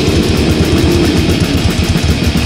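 Grindcore/crust demo recording: heavily distorted guitar and bass over fast, dense drumming, with a guitar chord held for about the first second and a half before the drums come back in full.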